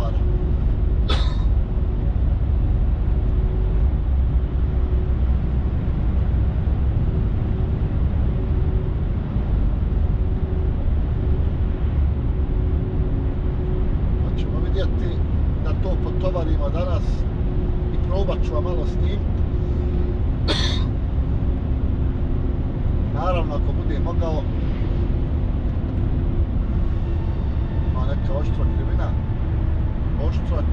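Heavy truck driving at steady cruising speed, heard inside the cab: a loud, even low rumble of engine and tyres with a faint steady hum above it. Short snatches of quiet speech come and go in the second half.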